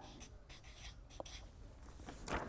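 Felt-tip marker faintly scratching on paper in short strokes as words are written.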